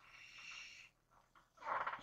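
Faint breathing from a woman close to the microphone: a soft exhale in the first second, then a louder breathy intake near the end.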